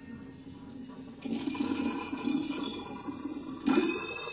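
Experimental improvised music for piano and live electronics: noisy, clinking and scraping textures over a low hum, with a sudden louder entry about a second in and a sharper, louder swell just before the end.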